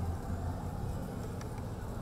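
Low, steady street ambience with a vehicle engine idling, and a faint tick about a second and a half in.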